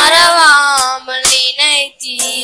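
Two boys singing a Christian worship song into microphones, over Yamaha PSR-S775 keyboard accompaniment with sharp percussion hits.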